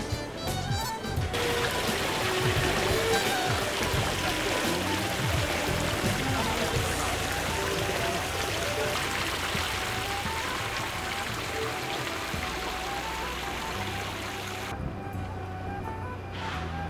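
Background music with a melody. Over it, the steady rush of fountain water falling into a pool comes in suddenly about a second in and cuts off near the end.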